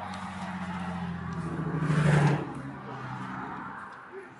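A motor vehicle passing by: a low engine hum grows to its loudest about two seconds in and then fades away.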